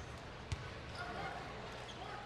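A single basketball bounce on a hardwood court about half a second in, during a player's pre-free-throw routine, over a faint steady murmur of the arena crowd.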